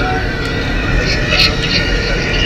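Moving car heard from inside the cabin: steady engine and road rumble, with a voice over it.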